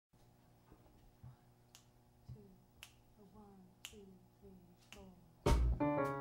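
Finger snaps about once a second setting a slow jazz tempo, over quiet upright bass notes that slide down in pitch. About five and a half seconds in the band comes in loudly with piano chords and drums.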